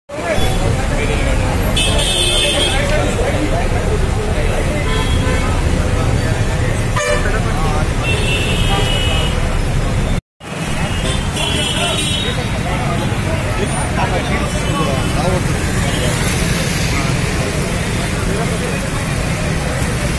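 Street noise of a crowd talking over road traffic, with vehicle horns tooting a few times, near the start and around the middle. The sound cuts out for a split second about halfway.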